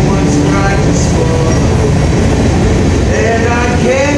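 A train passing close by: a loud, steady rumble of wheels and cars, with a man's singing and guitar strumming over it.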